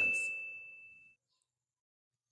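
A bright, single-pitched ding sound effect ringing out and fading away over about a second, followed by silence.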